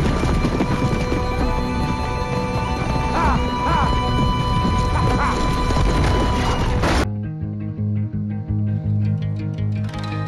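Film soundtrack of a horse-drawn chariot race: music mixed with the dense low noise of hooves and wheels, with a few short wavering calls about halfway through. About seven seconds in it cuts off suddenly into different music with a steady, evenly repeating bass beat.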